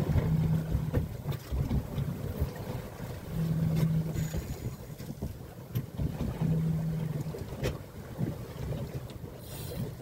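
Wind and water noise on a boat at sea, with a low hum that comes and goes three times and a few sharp knocks.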